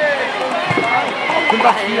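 Overlapping voices of several people talking in a sports hall, with a man saying "Was? Ja" near the end.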